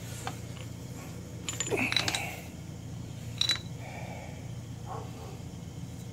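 Milling machine running with a steady hum as its rotating cutter takes a light facing cut, like a fly cut, across the top of an air compressor connecting rod's big end clamped in the vise. A few sharp metallic pings ring out about one and a half to two seconds in and again at about three and a half seconds.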